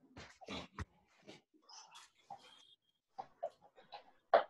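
Faint, heavy breathing of a man exercising: short, breathy puffs of breath in quick, irregular succession.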